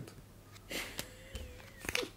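Cardboard game cards being picked up and handled on a tabletop: a short rustle, then a few soft clicks and taps.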